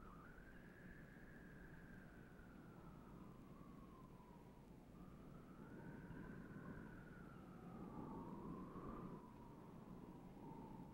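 Near silence with a faint, slowly wavering high tone that glides up and down, joined by a second tone about halfway through, over low hiss.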